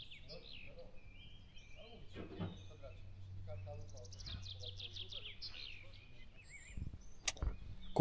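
Small birds singing in woodland: scattered chirps and a run of quickly repeated trilled notes, over a faint low steady hum. A single sharp click comes near the end.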